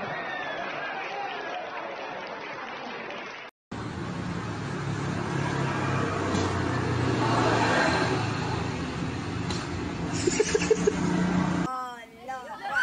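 Crowd noise with voices for the first few seconds. After a sudden cut, a small motorcycle engine runs steadily as it is kick-started, getting louder toward the middle, with a quick run of pulses near the end.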